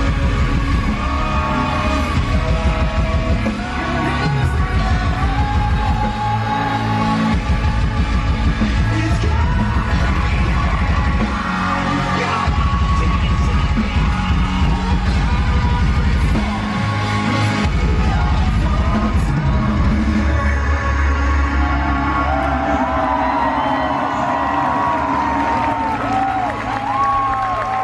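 A live metal band playing loud with shouted vocals, heard from within a concert crowd. A sung melodic line comes in near the end.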